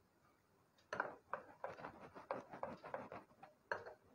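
A wooden spoon stirring thin batter in a glass bowl: a quick, irregular run of soft scrapes and taps against the glass that begins about a second in.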